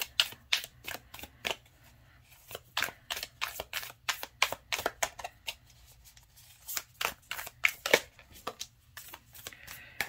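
A stiff tarot deck being shuffled by hand: a quick, irregular run of soft card clicks and slaps, broken by a few short pauses.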